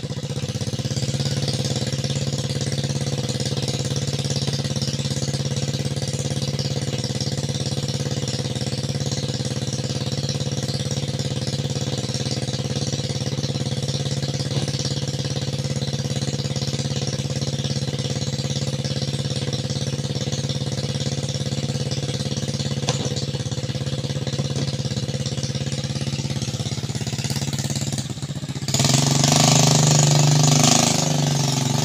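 Small motorcycle engine on an oil palm fruit-hauling motorcycle, idling steadily. It gets louder near the end as the rider revs it and pulls away.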